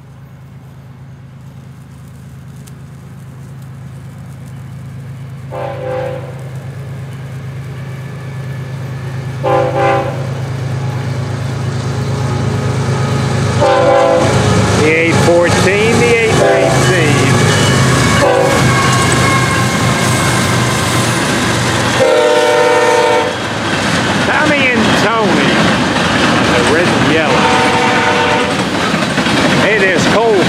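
Florida East Coast Railway freight train led by two GE ES44C4 diesel locomotives, approaching and passing close by: the engines' low drone grows steadily louder as they work under power, the air horn sounds repeated blasts for the grade crossing, and after the locomotives go by, the freight cars roll past with continuous wheel clatter.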